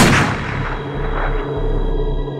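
A single loud booming hit right at the start, dying away in a long reverberant tail, over a low, steady music drone: a cinematic impact effect in a film trailer.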